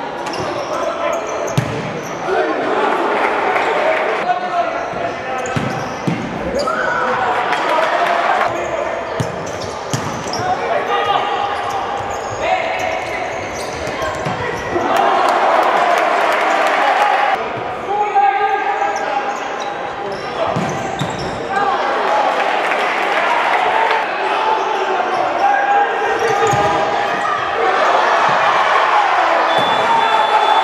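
Live indoor futsal play: the ball thuds as it is kicked and bounces on the hardwood court, under continual shouting voices echoing in a large sports hall.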